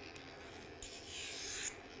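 Electric pet nail grinder filing a toy poodle puppy's claw, blunting its sharp cut edge: a short, faint burst of grinding noise lasting under a second near the middle.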